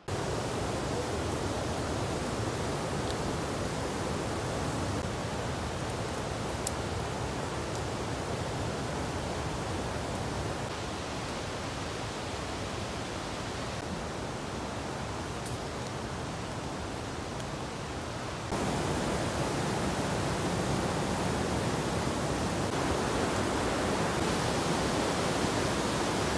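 A steady, even rushing noise with no distinct events; it becomes a little louder about eighteen seconds in.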